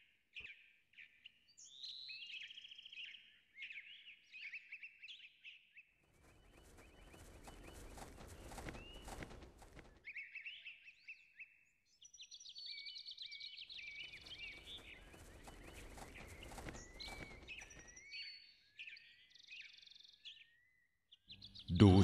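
Faint birdsong ambience: many short chirps and gliding calls. Two stretches of soft rushing noise, each about four seconds long, come in about six seconds in and again about fourteen seconds in.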